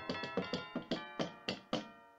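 Roland SPD-20 electronic percussion pad struck with drumsticks, sounding a pitched, ringing sampled percussion voice. About eight strikes come ever more slowly, and the last rings out and fades near the end.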